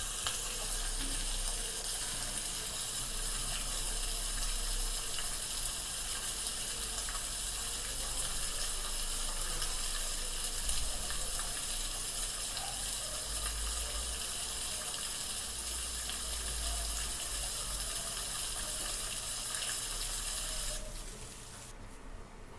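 A steady high hiss with a faint, uneven low rumble, from the soundtrack of a phone video of the night sky played back on a computer. It cuts off suddenly about a second before the end.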